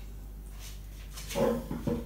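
Quiet room tone, then a little over a second in a short meow from a domestic cat.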